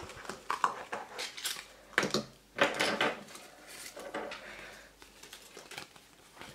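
Small plastic toy parts clicking and knocking against a yellow plastic Kinder Surprise capsule as it is opened and emptied, with light rustling in between; the loudest knocks come about two to three seconds in.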